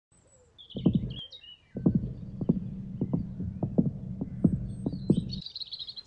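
Synthetic bird-like tweets over a run of low thumps, about two to three a second, with a steady low hum beneath; the thumps stop about five and a half seconds in, and a high twittering follows near the end.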